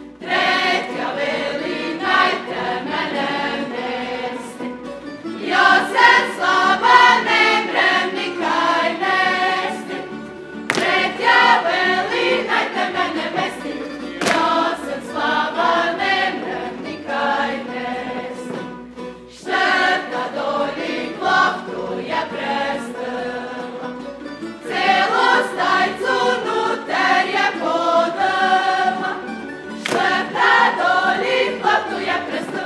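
A group of voices singing a Međimurje folk song in unison, in sung phrases of a few seconds with short breaks between them, accompanied by a tambura band.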